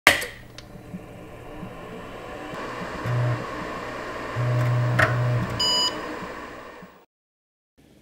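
An IBM 5140 PC Convertible powering up and running its self-test: a click, then a steady hum. Two stretches of low buzzing follow, with a sharp click between them. Near the end comes one short high beep from the internal speaker, the POST beep that signals the self-test has passed.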